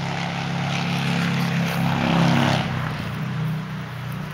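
Engine of a passing vehicle droning steadily, growing louder to a peak about two seconds in, then dropping slightly in pitch as it moves away.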